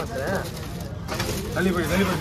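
Indistinct background voices talking, with no clear knife chops.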